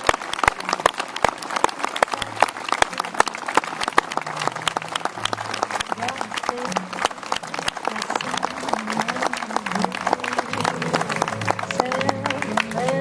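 An audience applauding: dense, steady clapping. From about two seconds in, a low tune of held notes runs beneath it.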